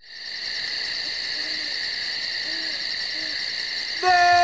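Night-time nature sound effect: a steady high-pitched drone, with an owl hooting three short times over it. It starts abruptly.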